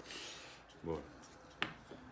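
Hands handling pieces of foam backer rod and a roll of duct tape on a table: a brief rustle at the start, then one sharp click about one and a half seconds in.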